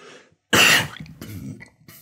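A man coughing into his fist: one sharp cough about half a second in, followed by a few weaker coughs.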